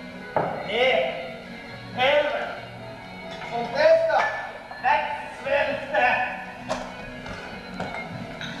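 Actors' voices on a theatre stage over background music, with a couple of sharp knocks.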